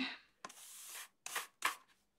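A broom sweeping, faint: one longer stroke about half a second in, then two short strokes.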